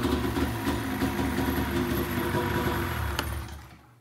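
2003 Polaris Pro X 600 snowmobile's two-stroke twin engine idling after a rebuild of its drive and exhaust. It is switched off a little past three seconds in and runs down to silence.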